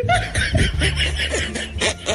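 A person snickering and chuckling in a run of quick, repeated breaths of laughter.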